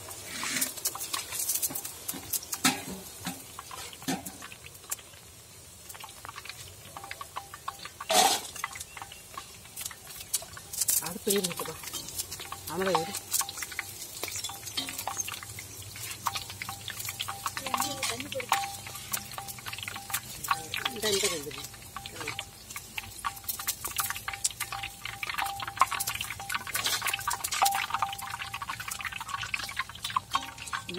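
Boondi frying in hot oil in a large iron kadai, with oil dripping and pouring back off perforated skimmers as fried batches are lifted out. Many scattered sharp clicks from the metal ladles and spattering oil.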